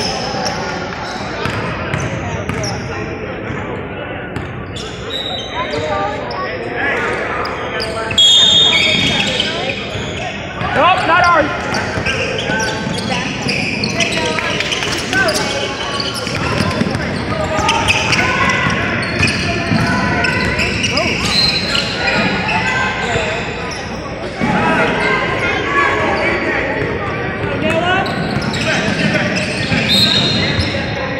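Basketball being dribbled and bounced on a hardwood gym floor during a game, repeated thuds echoing in the large hall, mixed with indistinct shouts and chatter from players and spectators.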